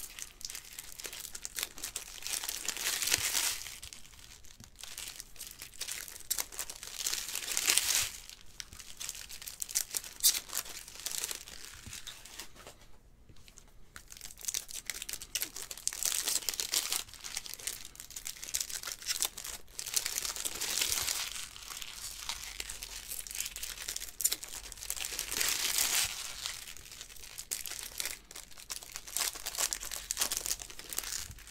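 Foil wrappers of 2020 Bowman Baseball hobby packs being torn open and crinkled, with the cards inside flipped through between packs. The crinkling comes in bursts every few seconds, with a short lull near the middle.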